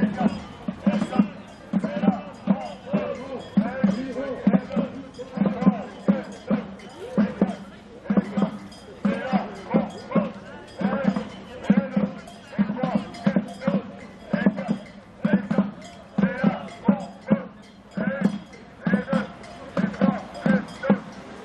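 A drum beaten in a steady march rhythm, about two beats a second, under a group of marchers' voices chanting.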